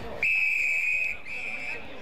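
Umpire's whistle at an Australian rules football match, blown twice: a long blast followed by a shorter one.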